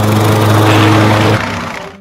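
A walk-behind rotary lawn mower's small petrol engine running with a steady low drone. About a second and a half in it drops off and fades out.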